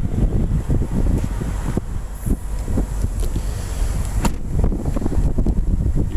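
Wind buffeting the microphone, an uneven low rumble, with a couple of sharp knocks about two seconds and about four seconds in.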